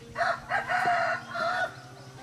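A rooster crowing once, a drawn-out crow of about a second and a half in several linked parts.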